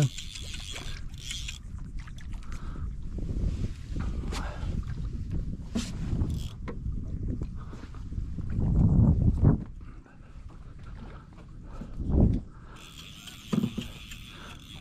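Wind and water noise on the open deck of a small fishing skiff: a low, rough rush with a few sharp knocks, a louder low surge about nine seconds in and a shorter one near twelve seconds.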